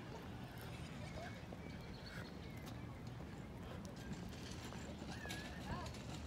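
Outdoor background of distant voices over a low steady rumble, with a string of short sharp clicks throughout.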